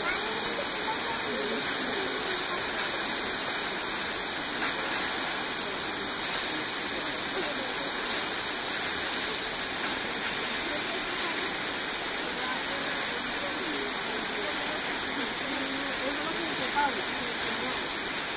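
Tall waterfall falling onto rocks, a steady, unbroken rush of water.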